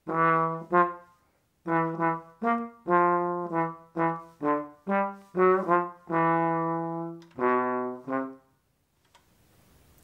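Trombone played through a Jo-Ral brass-bottom aluminum straight mute: a short phrase of about fourteen notes, with a brief pause after the first two, ending on two longer held notes, the last fading out. The brass bottom gives a warmer, softer muted tone than an all-aluminum mute.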